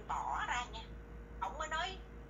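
Speech only: a woman talking in two short phrases.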